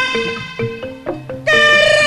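Live Javanese ludruk music: a woman singing through the PA over gamelan accompaniment with drum strokes. Her long held, loud note breaks off at the start, leaving short metallic gamelan notes and drum hits, and she comes back in strongly about one and a half seconds in.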